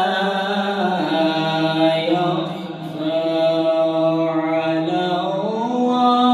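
A man reciting the Quran in the slow, melodic tajweed style, drawing out long held notes. His voice steps down to a lower note about a second in and climbs back up near the end.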